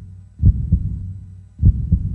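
Heartbeat-style sound effect of the closing logo card: deep double thumps in pairs about every 1.2 seconds over a low steady hum.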